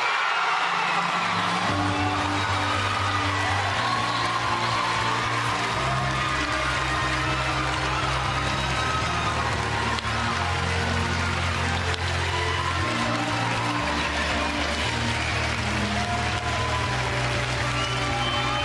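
Loud play-on music with a bass line stepping from note to note, over an audience cheering, whooping and applauding.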